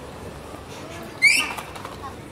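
A short, high-pitched squeal about a second in, fading away over about half a second, over steady background noise.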